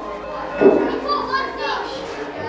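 Indistinct chatter and calls of several children's voices, with one louder call about two-thirds of a second in.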